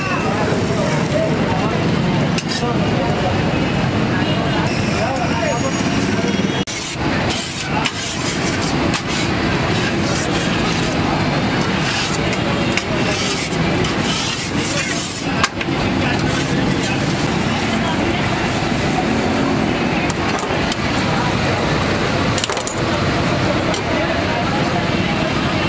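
Busy street-stall din: steady traffic and background voices, with occasional sharp clinks of a steel spatula on a flat griddle.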